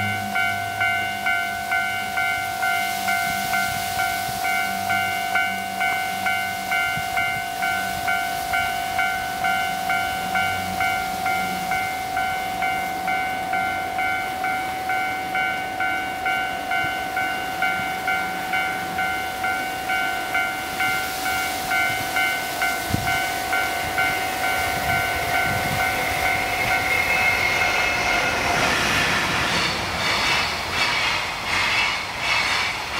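Train running on an elevated railway: a steady multi-tone whine with a regular pulse a little under twice a second, and a rising rush of noise near the end as it draws closer.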